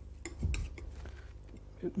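Palette knife scraping and tapping on a palette as it mixes oil paint, with a few short clicks in the first second.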